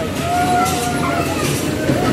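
Dodgem cars running across the rink floor, a steady rolling rumble, with children's voices over it.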